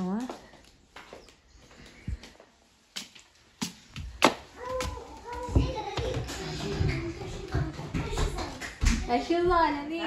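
Footsteps and knocks while walking across a wooden floor, with a few sharp clicks and low thumps. Children's voices come in near the end.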